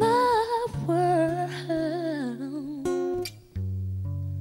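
A woman sings a long, wavering melismatic line on the word "my" over plucked acoustic guitar. Her voice falls away a little under three seconds in, leaving a couple of plucked guitar chords near the end.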